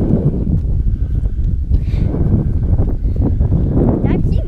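Wind rumbling against the camera's microphone, with the crunch and rustle of footsteps on a grassy, stony track.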